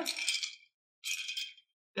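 Glass straw stirring ice in a tall tiki glass: ice clinking and rattling against the glass in two short bursts.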